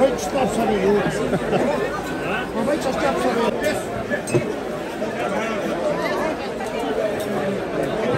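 Crowd chatter: many people talking over one another, with a few short glass clinks around the middle.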